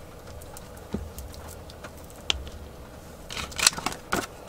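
Glue stick rubbed over a kraft-paper envelope flap, with a few small clicks, then a louder burst of paper rustling and handling near the end as an envelope is lifted and moved.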